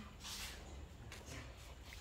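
Quiet background: a faint steady low hum, with a soft brief hiss about a quarter-second in and no clear event.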